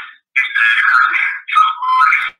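Garbled, tinny audio from a glitching video-call connection, coming in bursts with no low end, the kind of echo and strange noise that the call's connection problem is producing.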